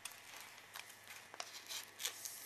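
Faint rustling of thick scrapbook paper being handled by fingers, with a few small ticks.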